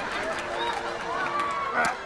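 A wordless voice, one drawn-out sound rising and falling in pitch, over soft held music notes, with a short sharp sound just before the end.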